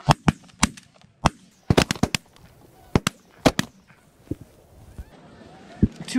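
A volley of shotgun blasts from several hunters firing at geese overhead: about ten shots in the first four seconds, several in quick bursts around two seconds in, then a few fainter reports.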